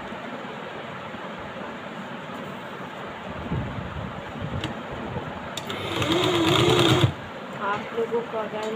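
Electric sewing machine running one short burst of stitching, about a second and a half long, near the end, then stopping abruptly. It is sewing a pleat dart into satin saree fabric.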